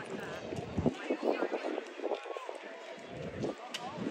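Indistinct talk of several people nearby, words not clear.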